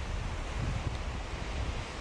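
Wind gusting on the camcorder microphone over a steady wash of surf, with an uneven low rumble and no distinct events.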